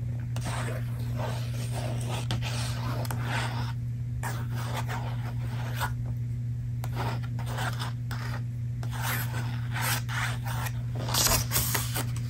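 A paper book being handled: pages rubbed and brushed in a run of dry, scratchy strokes, louder near the end.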